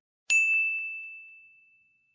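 A single bell-like ding sound effect: one sharp strike about a quarter second in, leaving one clear high tone that fades out over about a second and a half.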